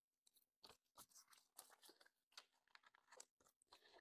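Near silence, with faint scattered clicks and rustles of banknotes and a card being handled on a desk.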